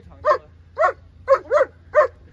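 A German Shepherd barking repeatedly, short loud barks about two a second, four or five in a row.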